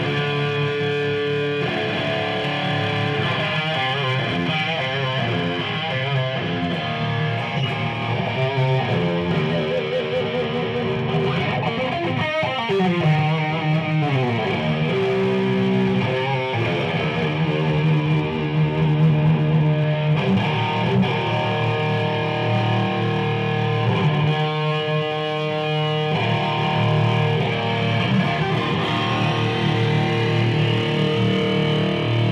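Heavy, distorted electric guitar riffing through a Laney Ironheart valve amp head, with sustained chords and a downward slide about halfway through.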